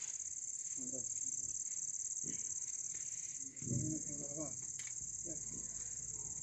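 Crickets chirping in a steady, high-pitched, unbroken trill, with a few faint voices low in the background.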